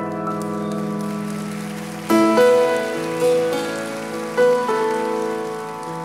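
Bösendorfer grand piano playing slow, sustained chords, with new chords struck about two, three and four and a half seconds in, each ringing on and fading.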